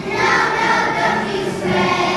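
A choir of young children singing together in unison, holding sustained notes.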